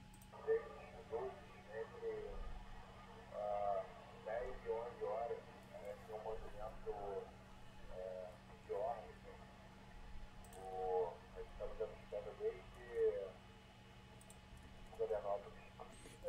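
Faint air traffic control radio: pilots and the control tower talking in short, thin-sounding transmissions with pauses between them, over a steady low hum.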